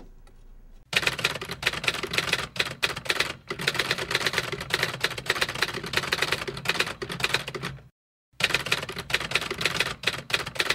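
Typewriter keys clattering in a rapid, continuous run that starts about a second in. It breaks off briefly near the end, then starts again.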